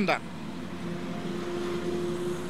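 Steady background hum of vehicle engines, with a faint steady tone running through it from about half a second in.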